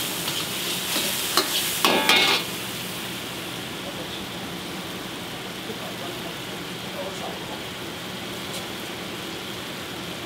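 Beef and shiitake mushrooms sizzling in a wok, with a metal ladle clanking and scraping against the pan as they are stirred. The loudest burst of sizzling and clanks comes about two seconds in, then it settles to a steady sizzle and simmer in the chicken stock.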